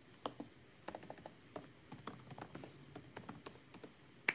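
Faint typing: an irregular run of light, quick clicks and taps, several a second.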